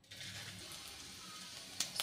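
Faint, steady sizzling of spice seeds dropped into hot oil in an aluminium kadai, with a small click near the end.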